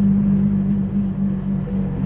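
Scania 113 truck's inline-six diesel engine heard inside the cab while cruising, a steady loud drone with a strong low hum and road noise under it.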